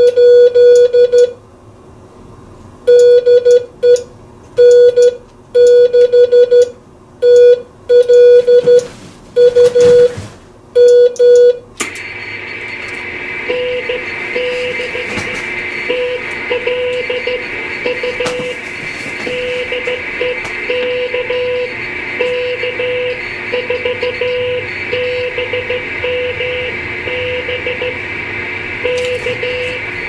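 Morse code (CW) being sent, heard as a loud, clean beeping tone keyed on and off for about twelve seconds. Then the shortwave receiver comes on with steady band hiss, and the other station's Morse reply comes through it as a fainter beeping tone at the same pitch.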